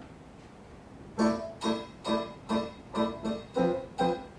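Piano playing repeated chords in a steady pulse, a little over two a second, starting about a second in after a short hush.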